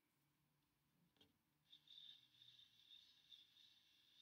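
Near silence: room tone, with a faint tick about a second in and a faint high hiss from a little before halfway.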